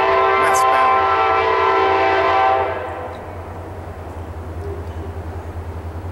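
Kansas City Southern Railroad train horn sounding one long multi-note chord that cuts off about two and a half seconds in. A low, quickly pulsing rumble of the passing train carries on underneath and after it.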